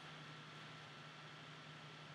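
Near silence: room tone, a faint steady hiss with a low hum.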